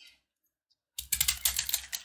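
About a second of silence, then a dense run of crisp crackling clicks as a crumbly block of dried, pressed soap cubes is cut with a box cutter and crumbles apart.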